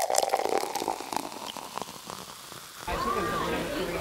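Close crackling and rustling, loudest at the start and fading over about three seconds, then an abrupt change to the murmur of voices in a busy restaurant.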